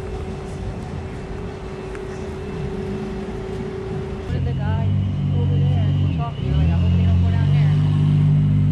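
Street traffic: a vehicle's low engine sound comes in and grows louder about four seconds in, over people's voices.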